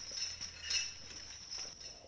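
High, glassy tinkling over a steady shimmering tone, fading out at the end, with a faint low hum beneath.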